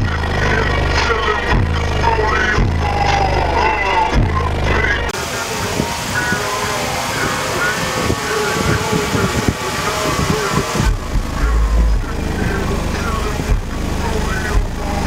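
Music played loud through a truck's car audio system, with heavy deep bass from two 18-inch SMD subwoofers. About five seconds in, the deep bass drops away, then comes back briefly near the end.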